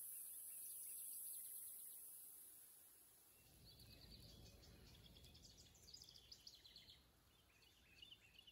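Near silence: faint outdoor ambience, with faint bird chirps coming in from about halfway through.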